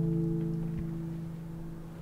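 The last strummed chord of a classical guitar ringing out and slowly fading away at the end of the song. There is one soft knock about a third of the way in.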